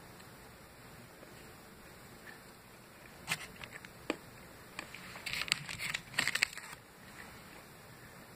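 A few separate sharp clicks, then about a second and a half of dense crinkling from about five seconds in, from a chocolate bar in its wrapper being handled.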